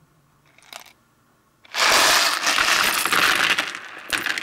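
A handful of plastic Lego Technic pins tipped out and scattered onto a hard tabletop: a loud, dense clatter of many small plastic clicks. It starts about two seconds in after a couple of faint clicks, then thins out slowly.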